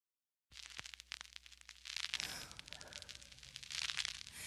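Soft rustling with many small crackling clicks as long hair is tousled and swept by hand close to the microphone, starting about half a second in and growing a little louder partway through.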